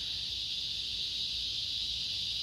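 A chorus of cicadas making a steady, high-pitched drone with no breaks.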